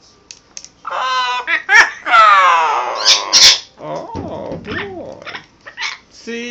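Double yellow-headed Amazon parrot calling loudly while displaying: a run of calls, one long call falling in pitch about two seconds in, then lower calls.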